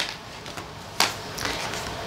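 Tarot cards being handled, with one sharp tap of the cards about a second in and faint handling noise after it.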